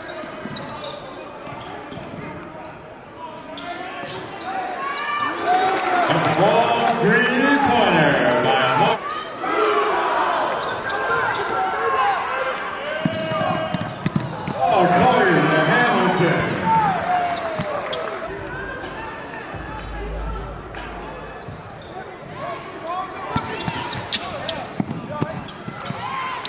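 Live high school basketball game in a gym: a ball bouncing on the hardwood floor, sneakers squeaking, and players and spectators shouting. The sound rises in two louder, busier stretches.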